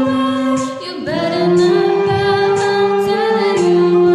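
A group of voices singing a Christmas carol together in long held notes, with a short dip about a second in before the next phrase begins.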